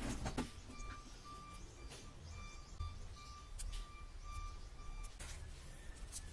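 The door of a steel charcoal smoker box being shut, with a short clatter of metal at the start. Then a high electronic beeping at one steady pitch, in uneven on-and-off pulses, runs until near the end.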